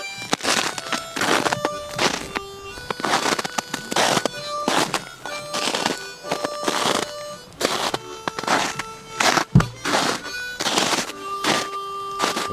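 Footsteps crunching through snow, about two steps a second, with one dull bump about nine and a half seconds in. Slow background music of long held notes plays underneath.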